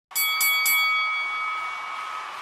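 Boxing-ring bell sound effect struck three times in quick succession, about a quarter second apart, then ringing on and slowly fading.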